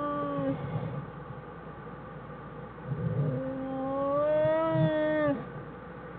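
Black bear cub whining in its den. A long, steady, nasal whine ends about half a second in. A second, louder whine begins about three seconds in, rises slightly and cuts off abruptly after about two seconds. Soft scuffs and thuds in between.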